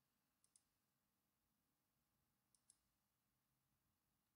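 Near silence, with two very faint double clicks of a computer mouse button, about half a second in and again at about two and a half seconds.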